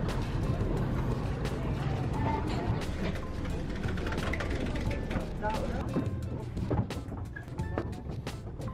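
Low, steady engine rumble of a small lake passenger boat, with indistinct voices of passengers and background music mixed in.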